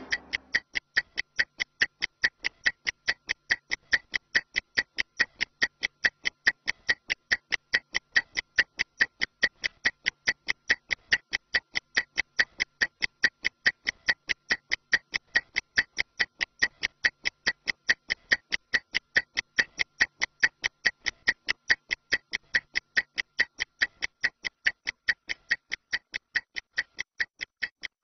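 Stopwatch ticking sound effect: an even run of sharp ticks, several a second, timing a 30-second rest interval between exercises.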